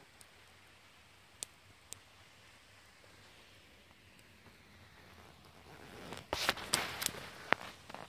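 Faint steady rushing of a waterfall about 100 feet away. From about six seconds in, a burst of rustling and several sharp clicks is the loudest sound.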